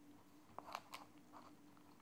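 Near silence: faint room tone with a steady low hum and a few soft clicks about half a second in.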